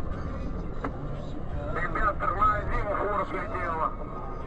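Steady low rumble of a vehicle driving, heard from inside the cab, with a person's voice talking over it from about two seconds in.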